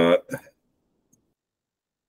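A man's voice trailing off in the first half second, then near silence with one faint click about a second in.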